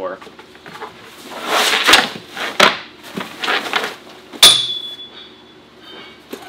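Heavy rolled tent fabric rustling and sliding as it is unrolled and handled on the camper platform, with a few sharp knocks; the loudest, about four and a half seconds in, is a clink that rings briefly.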